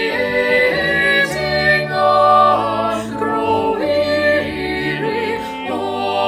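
Small mixed group of women's and men's voices singing a hymn (a Scottish metrical paraphrase) in parts, with keyboard accompaniment holding low notes under the voices.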